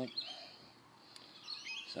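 Birds chirping in the background: a couple of short, high chirps just after the start and a few more about a second and a half in, over faint outdoor noise.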